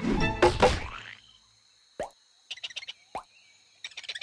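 Cartoon music fading out in the first second. Then two hollow cartoon plop effects about a second apart, for coconuts dropping from a palm onto a shark's head, with a scatter of small clicks between and after them.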